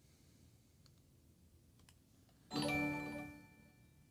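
A short electronic chime of several ringing tones, the alert for a new stream follower, sounding once about two and a half seconds in. It fades over about a second, with one high note hanging on longer.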